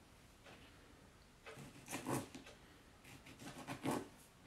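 Small kitchen knife cutting a tomato into wedges on a plastic board, with the tomato pieces being handled: two short bouts of soft cutting and scraping, about halfway through and near the end.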